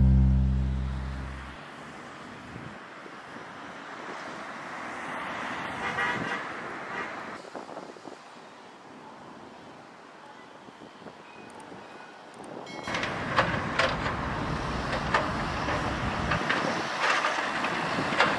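The tail of a music jingle fades out in the first couple of seconds, then outdoor street ambience with traffic, swelling briefly as something passes. About 13 seconds in, louder traffic and machine noise with many small clicks and knocks takes over.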